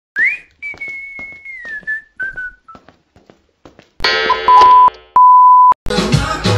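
Cartoon-style whistling: a quick rising whistle, then a long held note that slides down in steps over about two seconds, with light tapping clicks underneath. About four seconds in, a loud buzzy tone gives way to a steady pure beep held for about half a second, cut off just before music starts.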